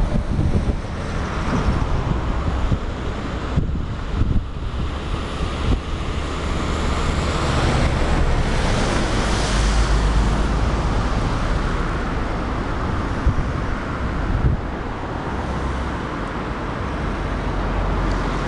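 River in high flow rushing over a weir, a steady noise of churning white water, with wind buffeting the microphone in a low rumble.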